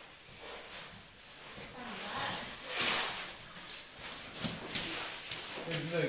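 Scuffing and rustling of people moving over cave rock, with a few sharp knocks and a louder rush of noise about three seconds in; faint voices come in near the end.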